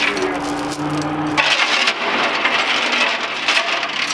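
A steady engine hum that cuts off about a second and a half in, followed by a dense run of metallic clinks and rattles from a steel chain being handled at the bus's front end.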